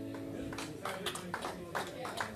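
An acoustic guitar's last chord ringing out and fading, then a small audience starting to clap about half a second in.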